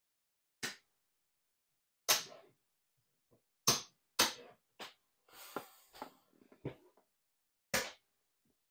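Casino chips clacking as they are picked up, stacked and set down on a craps table layout: a string of separate sharp clacks at irregular intervals, coming thickest in the middle.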